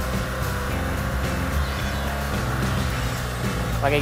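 BMW R 1200 GS Adventure's boxer-twin engine running at a steady road pace with wind noise, under background music.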